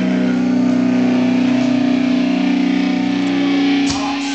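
Amplified distorted electric guitars holding one long, steady, loud note that rings out, broken off by a knock near the end.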